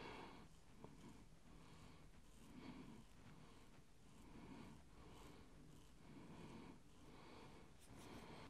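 Near silence: room tone, with faint soft sounds repeating at under a second's spacing.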